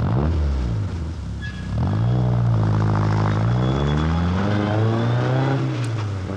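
A motor engine revving: its pitch dips at first, climbs about two seconds in and holds high, then drops again near the end.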